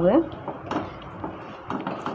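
A wooden spatula stirring a thick, sticky red mixture in a pan, scraping and knocking against the vessel a few times at irregular intervals.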